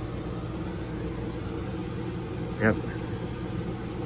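Steady low machine hum running without change.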